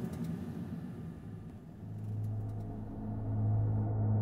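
Low rumble of the flight simulator's cockpit and engine noise fades away. About two seconds in, a steady low drone swells up, the start of a dark ambient music bed.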